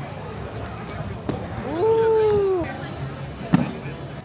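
A drawn-out vocal 'ooh' reacting to a skater, rising then falling in pitch, over a steady outdoor murmur of onlookers. Near the end comes a single sharp smack.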